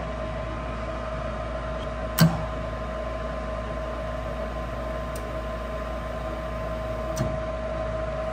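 High-efficiency gas furnace's draft inducer motor running with a steady hum and whine, with one sharp click about two seconds in and a fainter one near the end. The igniter glows but the burners do not light on this attempt, which is put down to air in the gas lines.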